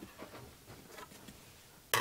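Faint handling sounds of paper and a clear plastic embossing folder on a craft mat: a few soft taps and rustles, then a louder sudden scrape of the folder starting right at the end.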